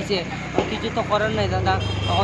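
A man speaking in Bengali, with a steady low hum coming in about one and a half seconds in.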